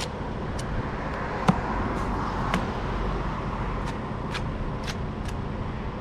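Steel mason's trowel spreading mortar onto the end of a concrete block, with a few sharp clicks and taps, the loudest about a second and a half in, over a steady low rumble.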